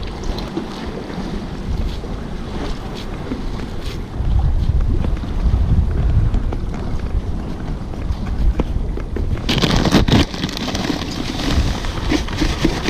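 Wind buffeting an action camera's microphone at the sea, with waves washing against the breakwater's concrete tetrapods. The wind rumble grows heavier about four seconds in, and a brighter hiss rises near the end.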